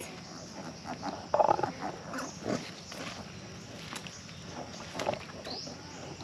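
A pig grunting a few times, the loudest about a second and a half in, with scattered clicks and rustles of footsteps on dry ground.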